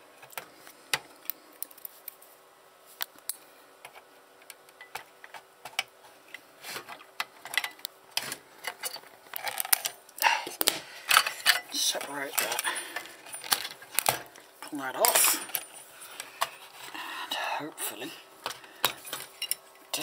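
Irregular clicks, clinks and rattles of hands and tools working small metal parts and cables inside an opened satellite receiver's metal case. The handling is sparse at first and busier in the second half.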